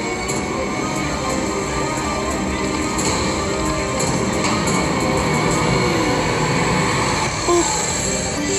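Walking Dead slot machine's free-games bonus music and game sound effects playing steadily as the reels spin, with a few short clicks and a brief louder tone near the end.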